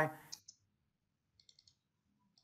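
A voice cuts off a moment in, then near silence broken by a few faint computer clicks, a small cluster of them about a second and a half in.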